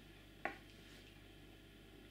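Near silence with faint room tone, broken by a single short click about half a second in.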